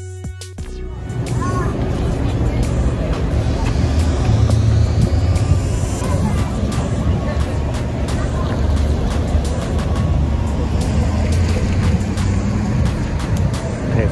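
Outdoor street noise: traffic on a city street, heard as a loud continuous low rumble with scattered clicks and knocks. It follows a brief tail of electronic music that cuts off just after the start.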